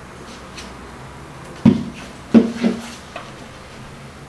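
Glue stick rubbed across a notebook page in a few faint strokes, then three soft knocks in the middle, the loudest about two and a half seconds in.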